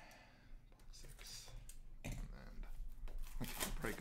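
A trading card box being cut open with a folding knife and its packaging handled: scattered scrapes, rustles and light taps, getting busier with a cluster of sharper clicks about three and a half seconds in.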